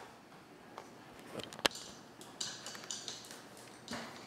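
Palette knife and roller working black printing ink on an inking slab: a few light taps, one sharp click about a second and a half in, then a run of short, hissy scraping strokes.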